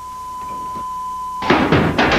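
A steady high electronic tone, one pitch held without change, cut off about three quarters of the way through by a sudden loud start of voices and music.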